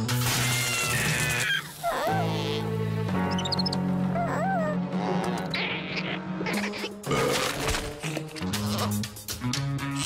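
Cartoon background score, with slug creatures chattering in short squeaky chirps and gibberish. An electric crackle sounds in the first second or so.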